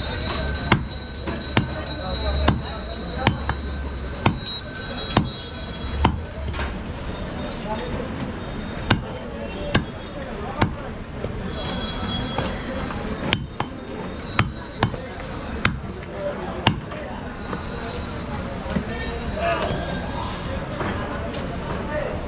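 Large butcher's knife chopping goat meat on a wooden log chopping block: sharp single chops about once a second, which stop after about 17 seconds.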